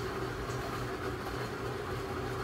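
A steady low mechanical hum of background noise that holds level throughout, with no speech.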